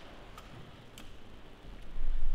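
Quiet room tone with two faint clicks about half a second apart; a low rumble begins just before the end.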